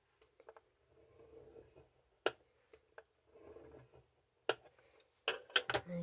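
A metal stylus drawn along a scoring-board groove, scoring a sheet of acetate: two faint scraping passes, pressed hard to score the plastic. Sharp small clicks of the stylus and the plastic sheet come between the passes, with several close together near the end.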